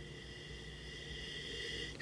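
A faint, long, slow sniff through the nose into a wine glass, nosing red wine, growing slightly louder toward the end.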